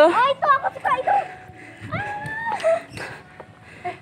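People talking, words unclear, with one drawn-out high-pitched voice sound about two seconds in.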